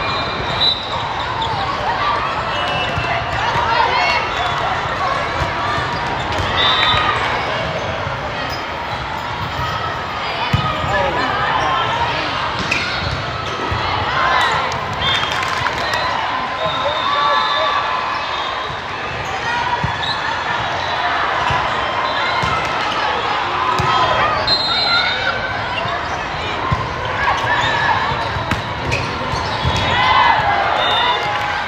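A volleyball being hit and bouncing during rallies on an indoor court, a few sharp impacts standing out over steady chatter and calls from many players and spectators in a large, echoing hall.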